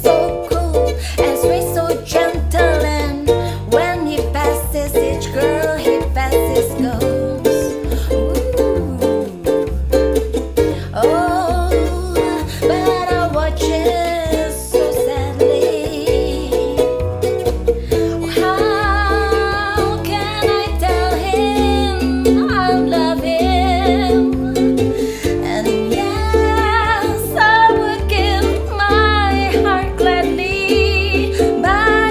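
A woman singing a bossa nova song while strumming chords on a ukulele, with a steady low pulse under the strumming.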